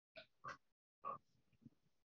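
Near silence broken by about four faint, short breath or throat sounds from a person close to the microphone; the loudest comes about a second in.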